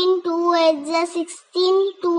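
A child's voice reciting the two times table in a drawn-out, sing-song chant. There are two held phrases, with a short pause between them about one and a half seconds in.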